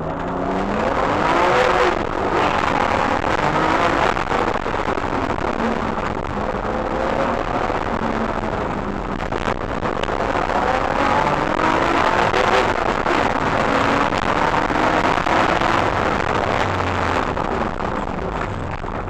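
BMW E36 race car engine heard from inside the cabin, accelerating hard from a standing start and up through the gears: the engine note rises repeatedly and drops back at each upshift.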